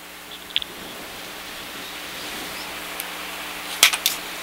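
Low handling and rustling noise over a faint steady hum, with a small click about half a second in and a couple of loud knocks near the end, as the camera is picked up and moved around.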